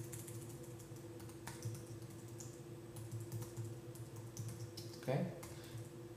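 Typing on a computer keyboard: a run of light, irregular key clicks, with a faint steady hum underneath.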